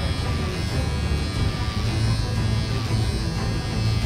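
Electric beard trimmer buzzing steadily as it clips through hair.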